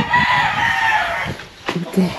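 A rooster crowing, the long drawn-out end of its call fading out after about a second and a half, followed by a single light knock.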